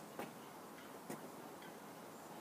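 Two short, faint taps about a second apart from a person practising a karate kata: feet in trainers stepping on paving slabs or hands meeting during the moves.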